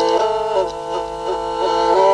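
Qyl-qobyz, the Kazakh horsehair-stringed bowed fiddle, played with a bow: a melody of held notes stepping up and down every half second or so.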